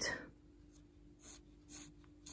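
Graphite pencil sketching lightly on drawing paper: a few faint, short scratching strokes, one about a second in and another near the end.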